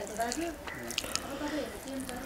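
Fingers mixing rice and greens on a plate, giving small wet clicks and squishes, with a voice talking in the background.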